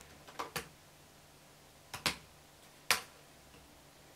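Laptop keyboard keys clicking in a few separate taps: a quick pair about half a second in, another pair about two seconds in, and a single click near the three-second mark.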